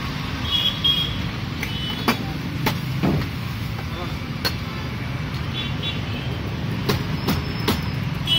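Glass tumblers clinking and knocking against each other and a steel counter, a few short ringing clinks among scattered sharp taps, over a steady low rumble of road traffic.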